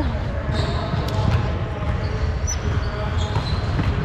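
Reverberant gymnasium ambience: distant chatter of players, balls thudding on the hardwood floor and a steady low rumble.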